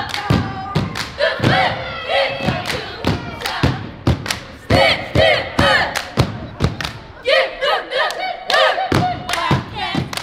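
Cheerleading squad stomping on a wooden gym floor and clapping in a steady rhythm while chanting a cheer together.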